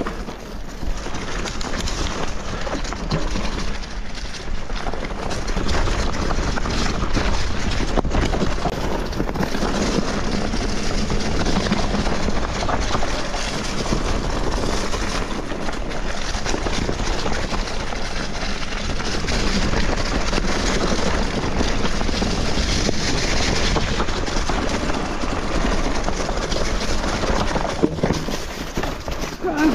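Mountain bike rolling downhill over dry fallen leaves and loose stones: continuous tyre crunch and rattle of the bike, with many small knocks and rumbling on the microphone.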